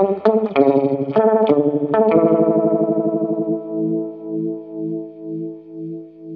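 Electric guitar played through a Blackout Effectors Sibling analog OTA phaser: quick picked notes for about two seconds, then a chord left to ring and fade, its volume swelling and dipping about twice a second with the phaser's sweep.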